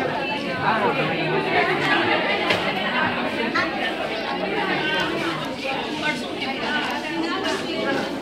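Indistinct chatter of many people talking at once, echoing in a large hall.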